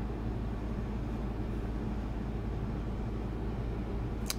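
Steady low background hum of room tone, even throughout, with no handling noises or other distinct sounds.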